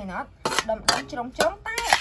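Dishes and cutlery clinking: about four sharp clinks, roughly half a second apart, the last and loudest near the end.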